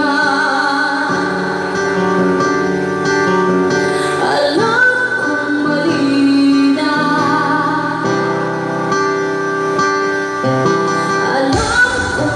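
A woman singing a song into a microphone, her voice amplified over instrumental accompaniment, holding long notes with vibrato.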